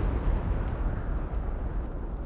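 Deep rumbling sound effect, the tail of a large boom, fading steadily away.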